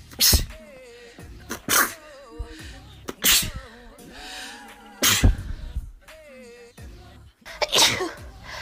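Women sneezing one after another: about five sharp sneezes, one every second and a half to two and a half seconds.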